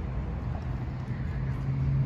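Steady low mechanical hum with a rumble underneath, like an engine or machinery running, and no voices.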